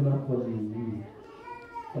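A man's voice draws out one syllable and lets its pitch sink during the first second. A little after halfway a faint, short, high-pitched cry rises and falls.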